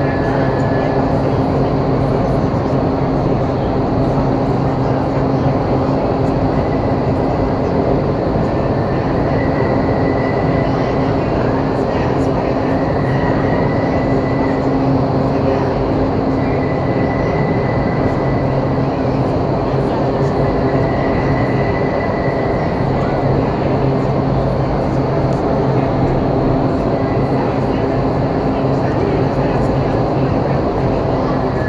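Vertical wind tunnel running steadily: a loud, even rush of air over a low, constant fan hum.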